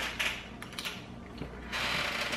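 Close-up chewing of a mouthful of chili mac with noodles and beans: a few small wet mouth clicks, then a short breathy hiss near the end.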